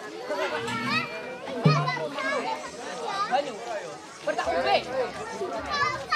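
A crowd of children talking and calling out, several voices overlapping at once.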